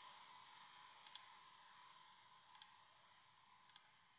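Near silence with a few faint computer mouse clicks: a quick double click about a second in, another click past halfway, and a double click near the end.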